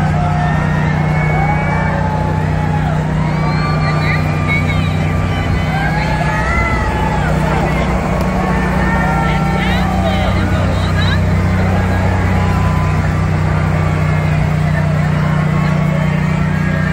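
Steady low engine hum from the pickup truck pulling a parade float, easing off briefly about halfway through. Many crowd voices call out and chatter over it.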